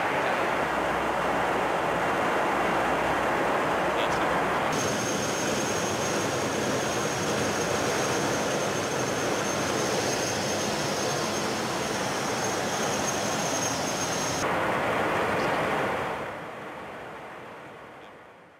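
Steady in-flight cockpit noise of a KC-135 Stratotanker, a broad rush of engine and airflow noise. About five seconds in the sound shifts abruptly and a thin, steady high whine rides on top for about ten seconds. Near the end the noise fades away.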